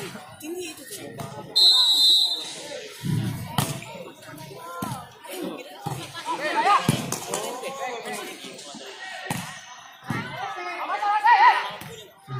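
An outdoor volleyball rally: a referee's whistle about one and a half seconds in, then the ball being struck by hands and forearms, several sharp hits spread through the rally. Players' shouts come in bursts during the play.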